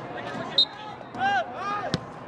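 Soccer players shouting to each other across the field, with a very short high tweet about half a second in and the sharp thud of a ball being kicked just before the end.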